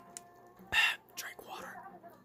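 A person's short breathy exhale, like a whispered 'haa', a little under a second in, followed by softer breathing.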